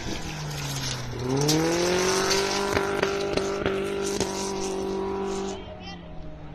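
BMW racing car's engine on a dirt track: the revs dip, then climb over about a second and hold steady and high for a few seconds, with a few sharp clicks over it. The engine sound drops away shortly before the end.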